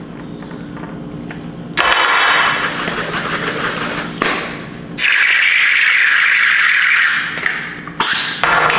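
Aerosol can of whipped cream being shaken hard by hand, a rattling shake in two long spells, about two seconds in and again from about five seconds to near the end.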